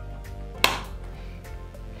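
One sharp snap about two-thirds of a second in as a Snap Circuits whistle chip (WC) is pressed onto its snap connector, over steady background music.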